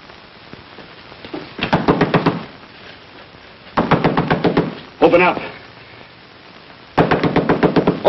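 Someone pounding hard on a door: three bouts of rapid blows, each lasting about a second, the last one running up to the end.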